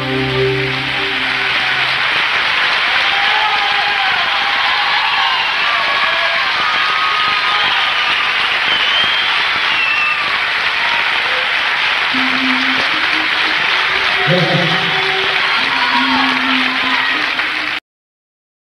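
A live band's final chord rings and fades out in the first second or two. A concert audience then applauds and cheers steadily until the sound cuts off abruptly near the end.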